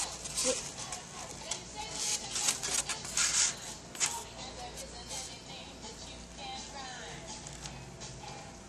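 A styrofoam sheet being handled and set down on a table: a string of loud, squeaky scratches and rubs over the first four seconds, ending in a sharp knock. After that only faint background music and voices remain.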